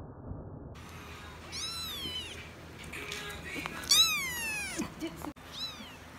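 Young kittens meowing: three high, thin meows, each falling in pitch, the middle one loudest.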